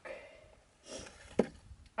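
Quiet handling sounds: a short rustle about a second in, then a single sharp click.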